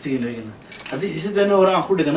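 A man speaking, with a short pause about half a second in.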